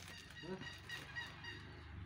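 Geese honking in the background: a quick run of short, repeated honks.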